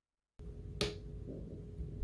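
A single sharp click about a second in, the small tactile push button on the breadboard being pressed, over a faint steady room hum that starts just before it.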